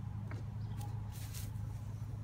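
A few light footsteps and knocks on a wooden deck, with a brief rustle about halfway through, over a steady low hum.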